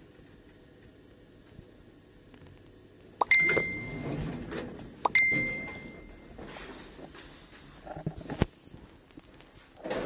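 Orona-Krakdźwig passenger elevator at its stop: two clicks, each followed by a steady high electronic tone lasting about a second, with the rumble of the sliding doors between them and a sharp knock near the end.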